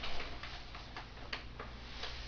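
Faint, irregular small clicks and ticks over a low steady hum, in a quiet room.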